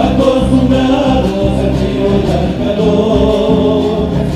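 Male vocal group singing held notes in close harmony over strummed acoustic guitars, amplified through a live PA.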